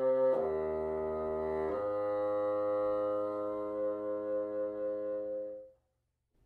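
Bassoon playing slow sustained notes that step down to a long, low held note. The held note wavers slightly in loudness, then dies away near the end.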